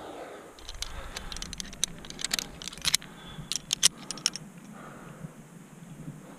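Metal climbing gear jingling and clicking against a bolted anchor's steel hangers and chain as carabiners are handled and clipped: a run of sharp metallic clicks from about half a second in until just past four seconds.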